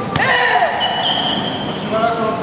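A single sharp smack as a kick lands in a karate sparring bout, followed at once by high-pitched shouts echoing in a large hall.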